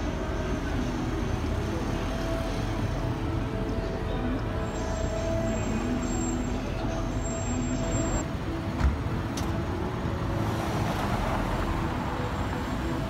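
City street traffic at an intersection: cars and a motor scooter passing with a steady rumble. One short, sharp knock comes about nine seconds in.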